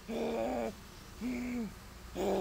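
A person groaning twice in short, drawn-out groans. The second groan arches and falls away at its end.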